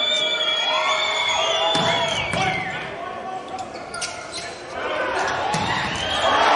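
Indoor volleyball court sounds in a large hall: shoe squeaks on the court floor, the ball struck a few times during the serve and rally, and players calling out.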